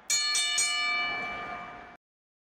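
A bright bell-like chime, struck suddenly and left ringing with several steady tones that slowly fade, then cut off abruptly at the end.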